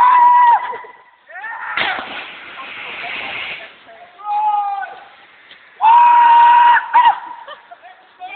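A long held yell as someone jumps off a cliff, then, under two seconds later, the splash of the body hitting the water, followed by about two seconds of churning water. Two more held shouts follow, the second and louder one about six seconds in.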